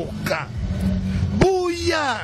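A person's voice talking, with a drawn-out syllable near the end, over a steady low rumble of background traffic.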